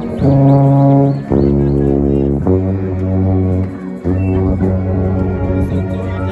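Brass band playing long held low chords, the notes changing about every second or so.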